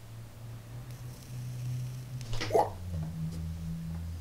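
Mini Tesla coil kit running with a low steady hum that steps in pitch a couple of times as a finger is held near its glowing top. About two and a half seconds in comes one short, sharp sound.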